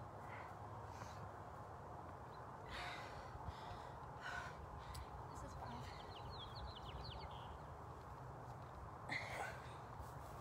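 Faint breathing with a few sharp exhales from a person winded from exercise while holding a plank, over a steady low background hum. Short runs of faint high chirps come about six seconds in.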